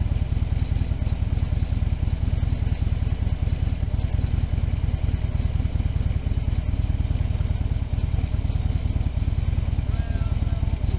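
Harley-Davidson touring motorcycle's V-twin engine idling steadily with a fast, even low pulse, left running to warm up and settle.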